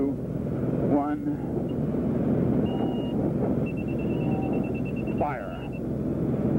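Light aircraft's engine droning steadily, heard from inside the cockpit, with a thin steady high tone for about two seconds near the end.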